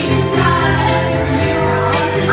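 Karaoke: a backing track playing through the bar's sound system, with a group of women singing along.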